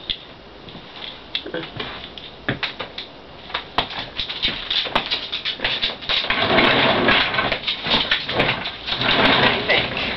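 Rustling and scattered clicks of someone handling things and moving close to the microphone. It gets louder from about six seconds in as she sits down in a desk chair.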